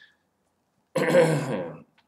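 A man clears his throat once, a rough burst lasting nearly a second, starting about a second in.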